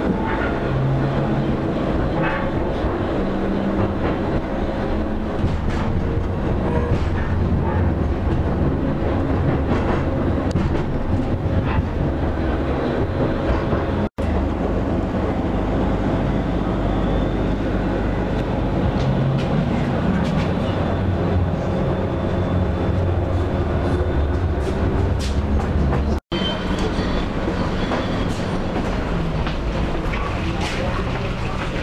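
Pesa Fokstrot (71-414) low-floor tram running, heard from inside the passenger saloon: a steady low rumble of wheels on rail, with scattered light clicks and knocks from the track. The sound cuts out for an instant twice.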